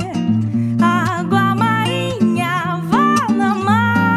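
A woman singing a slow, melodic MPB song with sliding, held notes, accompanied by a nylon-string acoustic guitar.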